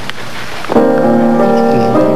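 Piano playing: after a short pause, a chord is struck about three-quarters of a second in and held, then moves on to further notes.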